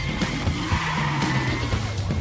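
Car tyres squealing as the car skids, a held high screech over background music with a steady beat.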